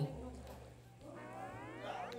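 A faint sound effect from the show's soundtrack: a rising, whistle-like pitch glide with several overtones in the second half.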